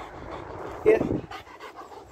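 A German Shepherd panting with her mouth open.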